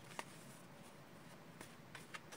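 Faint soft clicks of a deck of tarot cards being handled and shuffled by hand, one sharper tap just after the start and a couple of lighter ones near the end.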